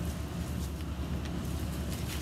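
Black pepper being shaken from a shaker onto a rack of beef short ribs, heard as a few faint irregular light rattles over a steady low background rumble.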